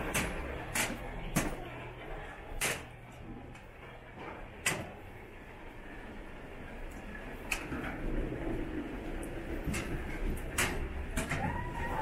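Wheeled suitcases rolling along a carpeted corridor with a steady low rumble, and several sharp clicks and knocks at irregular times among the footsteps. A short voice is heard near the end.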